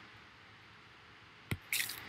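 Faint room hiss, then a single sharp click about one and a half seconds in, followed by a brief high hiss.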